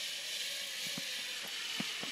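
Zipline trolley pulleys running along the steel cable: a steady whirring hiss, with two sharp clicks, about a second in and near the end.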